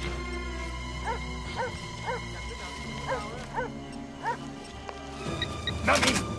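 Film soundtrack: tense music with a run of short, pitched yelping calls about one or two a second, and a loud sudden noise near the end.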